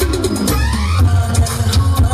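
Loud electronic dance music with a heavy bass beat, played for a group stage dance. Right at the start a sweep falls in pitch, and rising sweeps follow about half a second in, like a transition effect in a dance mix.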